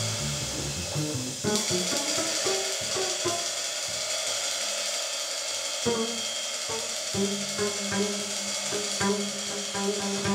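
Improvised jazz on acoustic grand piano and pizzicato double bass, with a low figure repeating from about seven seconds in.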